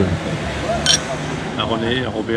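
Wine glasses clinked together once in a toast about a second in: a short, high, sharp clink over people talking.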